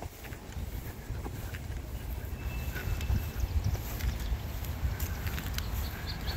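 Footsteps walking across grass, under a steady low rumble on the phone's microphone and a few faint ticks.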